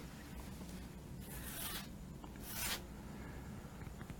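Clear coat being worked onto a canvas painting: two short scratchy strokes, the first a bit over a second in and a shorter one about a second later.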